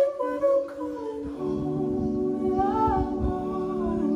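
Slow unplugged pop singing, with long held vocal notes over sustained chords on an electric keyboard. The keyboard chords come in about a second and a half in.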